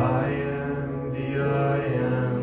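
A man singing a slow worship song through a microphone, holding long notes, with piano accompaniment.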